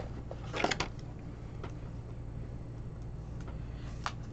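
Trading cards handled and set down on a card mat: a short cluster of light clicks and rustles about half a second in, then a few faint ticks, over a steady low hum.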